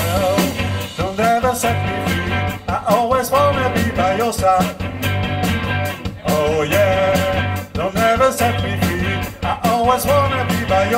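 A live rock band playing: electric guitars over a steady bass line and a regular drum beat, with a wavering lead melody on top.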